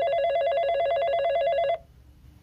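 A telephone ringing: one electronic trilling ring that warbles rapidly between two pitches, lasting just under two seconds and stopping abruptly. It is an incoming call that is answered right after.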